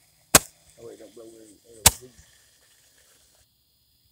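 Two sharp firework bangs about a second and a half apart, with people's voices between them.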